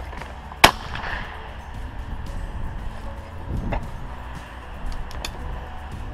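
A single 12-gauge shotgun shot from a Beretta Silver Pigeon over-and-under, one sharp crack a little over half a second in with a brief ring after it. Two faint clicks follow later.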